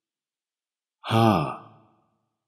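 Silence, then about a second in a man's voice says a single word, the Thai numeral 'ห้า' (five), breathy and falling in pitch.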